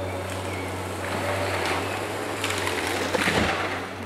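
Tracked timber harvester's diesel engine running with a steady low drone. From about two and a half seconds in comes a burst of crackling and snapping wood as the harvester head works a log.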